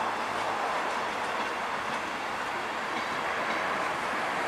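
Passenger train coaches rolling past on the track: a steady rumble of wheels on rails.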